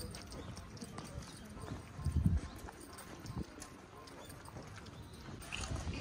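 Footsteps walking on a path with the murmur of a crowd's voices around them, and a low thump about two seconds in.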